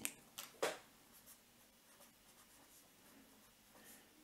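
Felt-tip pen writing on paper, faint soft strokes, after a couple of brief rustles just after the start.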